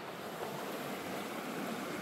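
Steady rushing of a small mountain stream's running water.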